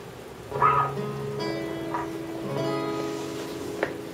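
Guitar notes and chords plucked and left ringing, starting about half a second in and changing a few times, with a sharp click near the end.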